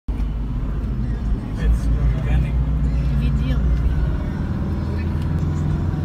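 Steady low rumble of a moving vehicle's engine and road noise heard from inside the cabin, with faint voices mixed in.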